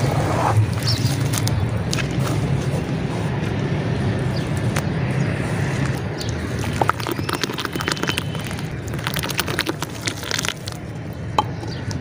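Wet red dirt being squeezed and sloshed by hand in a basin of muddy water, with scattered sharp crackles and clicks in the second half as a soaked dry dirt block crumbles.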